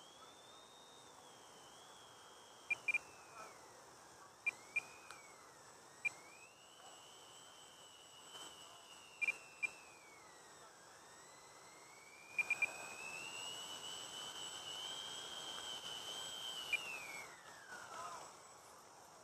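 Electric motors of a Freewing B-17 foam RC bomber whining as it taxis. The pitch rises and falls in several long sweeps with the throttle, and gets louder from about twelve seconds in. Sharp clicks are scattered throughout.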